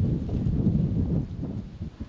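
Wind buffeting the microphone outdoors: an uneven, gusting low rumble with no clear tone.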